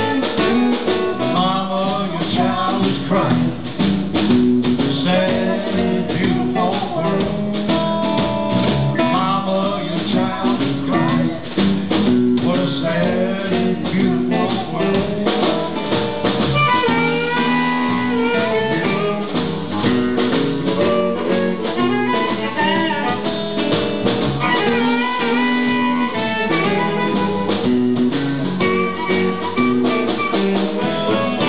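A live blues band playing: electric guitar, bass and drums, with a harmonica taking the lead from about halfway through, its bent notes wavering above the band.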